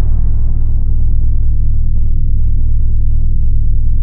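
A loud, steady, deep bass rumble from a film soundtrack's title-sequence sound effect, with a faint thin high tone held above it.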